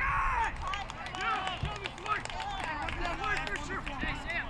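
Field sound of a soccer game: several players and spectators shouting and calling at once, with a loud shout right at the start.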